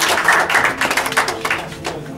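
A group of people clapping: a dense run of sharp claps that dies away near the end.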